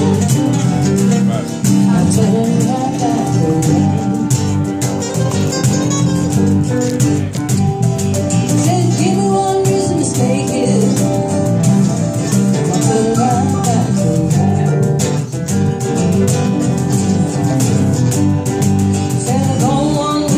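Live band music: guitars and hand percussion with cymbal strikes, with a singing voice over them.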